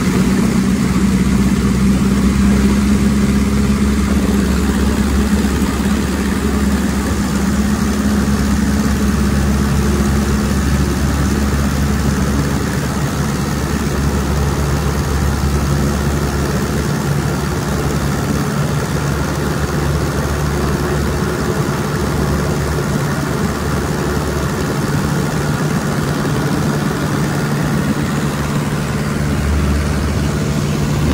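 De Havilland Tiger Moth's Gipsy Major four-cylinder inverted engine and propeller running steadily at high power, heard from the open cockpit with wind rushing over the microphone, during the takeoff run and climb-out.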